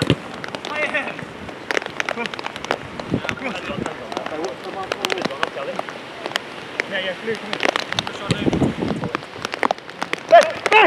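Five-a-side football on artificial turf: scattered knocks and scuffs of boots and ball over a steady hiss, with short shouts from players.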